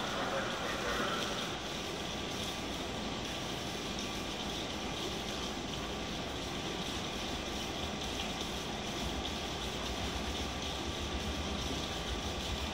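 Steady hiss of rain, with a low rumble building over the last few seconds from an EMU700 electric multiple unit train approaching in the distance.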